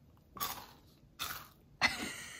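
A person coughing, three short dry coughs, the last the loudest.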